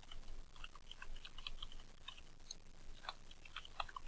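Typing on a computer keyboard: a quick run of faint, irregular keystrokes.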